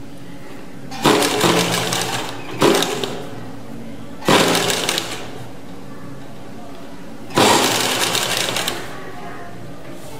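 Sewing machine stitching gathered fabric in four short runs, each starting abruptly and tapering off as the machine slows, with pauses between as the fabric is repositioned.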